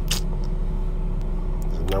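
A steady low background rumble with a brief click just after the start; a man's voice comes in at the very end.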